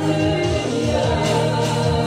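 Live gospel worship music: a church worship team playing and singing, with long held chords and a steady bass line.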